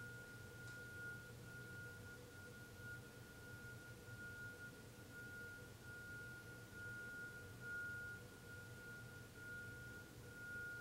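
Near silence: faint room tone with a steady high-pitched whine and a low hum.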